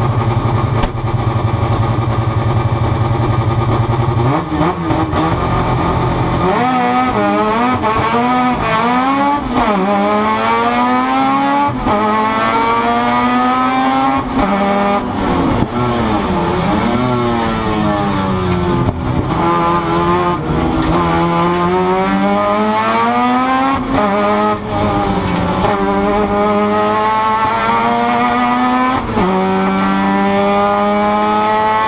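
Mazda RX-7 race car's 13B rotary engine heard from inside the cabin. It holds steady revs for the first few seconds, then accelerates hard through the gears: the pitch climbs and drops sharply at each upshift, with lifts and throttle blips for corners.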